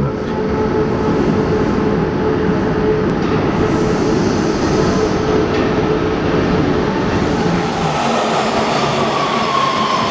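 Subway train running through an underground station with a loud, steady rumble and hum. Near the end a high metallic wheel squeal rises and slides slightly down in pitch.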